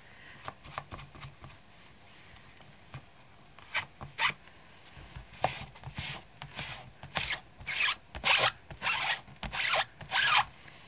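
Rubber stamps being rubbed clean, a series of scratchy rubbing strokes that begin a few seconds in and come thicker and louder toward the end.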